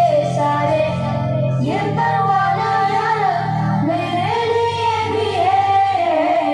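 A children's song, sung by children's and a woman's voices, with held notes that glide between pitches over a steady low backing.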